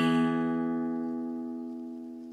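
Background music: the song's final chord is held and dies away, fading steadily.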